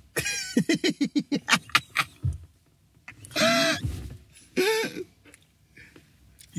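A man laughing hard: a quick run of short 'ha' sounds for about two seconds, then two longer laughing cries.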